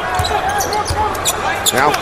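Basketball being dribbled on a hardwood court, repeated low thuds, amid a steady arena crowd murmur with short high squeaks of sneakers. A commentator's voice starts just before the end.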